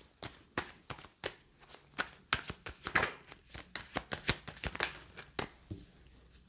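A deck of tarot cards being shuffled by hand and cards laid down on a table: a quick, irregular run of short flicking and slapping clicks.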